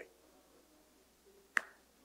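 A single short, sharp click about one and a half seconds in.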